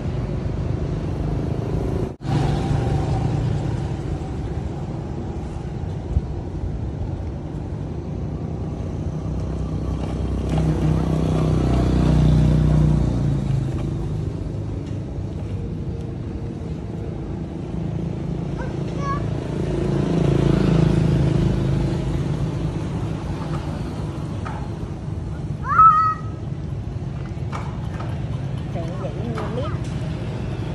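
Steady low outdoor rumble that swells and fades twice, with a brief high squeak about two seconds before the end.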